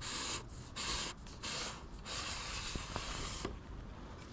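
Clothing rustling and rubbing against a body-worn camera as the wearer leans and moves, in four hissy bursts, the longest lasting over a second near the end.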